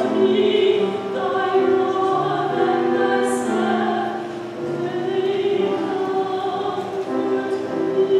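Church choir singing a slow passage in long held notes, several voices together.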